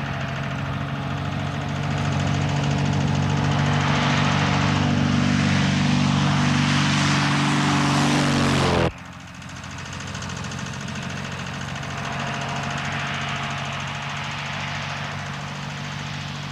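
Piston engine of a low-flying crop-duster plane on a spraying run, a steady drone that grows louder as it comes in low. About nine seconds in it cuts suddenly to a quieter, steady engine drone from the plane further off.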